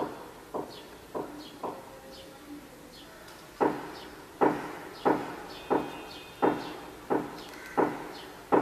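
A series of dull knocks, about one every 0.6 to 0.7 seconds: four, a pause of about two seconds, then seven more.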